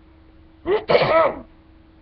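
A person sneezing once, a single loud burst lasting under a second about halfway through, over a faint steady hum.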